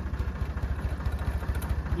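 Tractor engine running steadily with a low, even, rapid beat, while the shaft-driven walnut shaker is stopped.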